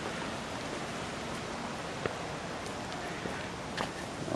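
Steady rushing noise of a strong wind, with a couple of faint clicks.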